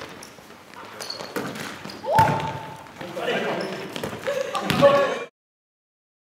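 Volleyball rally in a sports hall: several sharp hits of the ball, the loudest about two seconds in, followed by players shouting and calling. The sound cuts off abruptly a little after five seconds.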